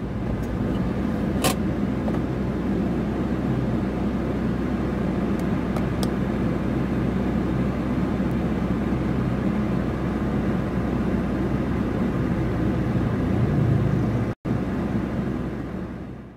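Steady low hum and road noise heard inside a stopped car, with traffic passing on the road outside. A short click comes about one and a half seconds in, and the sound fades out at the end.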